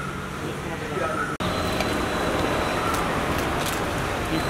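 Street ambience: a steady wash of traffic noise with faint voices in it. It is broken by an abrupt cut about a second and a half in.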